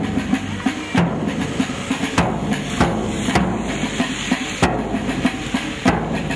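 Drum-led music: loud drum strokes about once a second over a sustained low tone.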